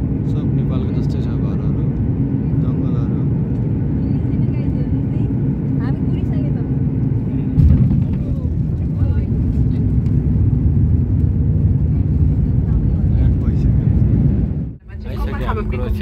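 Airliner cabin noise during landing: a steady low rumble of engines and airflow, with a sudden thump about halfway through as the wheels touch down, then the rumble of the roll along the runway. Near the end the sound breaks off briefly and is replaced by a steadier hum.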